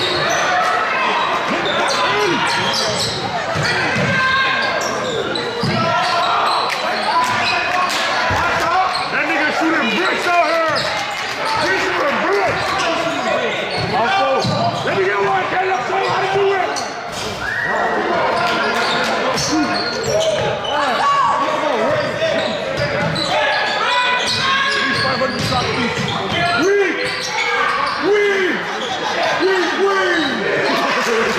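Basketball dribbled on a hardwood gym court during a game, the bounces ringing in a large hall, with players and spectators calling out throughout.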